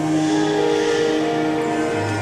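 Slow instrumental music played on an electronic keyboard, with held string-like notes that change pitch every half second or so. The bass drops out and comes back in at the end.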